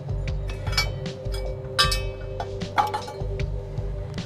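Steel parts clinking and knocking as a steel extension leg and its pin are handled and fitted to a post driver frame, a few sharp metallic clanks ringing briefly, over background music.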